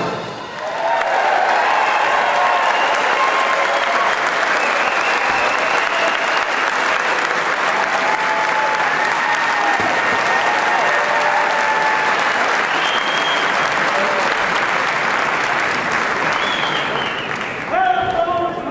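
Audience applauding and cheering, with shouts and whoops over the clapping, just after the brass music cuts off at the very start.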